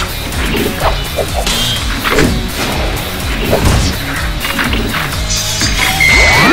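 Action music under a series of edited-in fight sound effects: sharp hits and sword clashes, roughly one a second.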